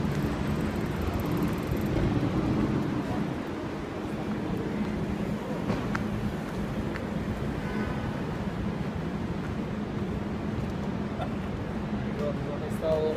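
Steady street traffic noise with a low, even engine hum.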